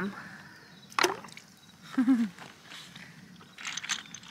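Water sloshing and splashing in a plastic bucket as seashells are rinsed in it by hand, with a sharp splash about a second in and more splashing near the end.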